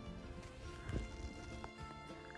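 Faint background music, with a few soft clicks and knocks from a hand-crank can opener being worked on a metal can, the clearest about a second in.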